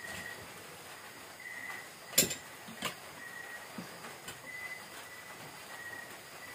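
Spoons and forks clinking against ceramic plates during a meal: one sharp clink about two seconds in, the loudest sound, then a softer one and a few light taps. Under it, a steady faint hiss and a faint high tone that comes and goes about every second and a half.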